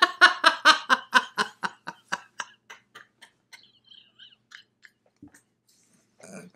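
Women laughing: a run of quick, even ha-ha pulses, about five a second, that fades out over a few seconds.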